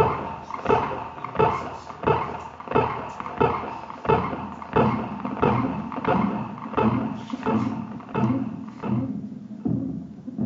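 A person's heartbeat, picked up as an electrocardiogram signal by a differential amplifier and turned into sound: an even pulse about every 0.7 s, roughly 85 beats a minute, each beat a short hit that dies away. Near the end the beats sound lower and duller.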